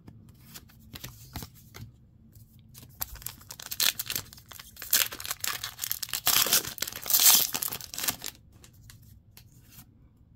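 Pokémon TCG booster pack's foil wrapper being torn open by hand. It starts with a few seconds of faint handling clicks, then comes a run of rustling tears, loudest about six to eight seconds in.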